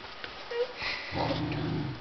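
A Bernese mountain dog puppy sniffing briefly, close to the microphone, about a second in.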